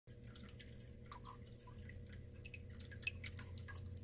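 Faint room tone: a low steady hum with a thin steady tone above it and scattered light ticks.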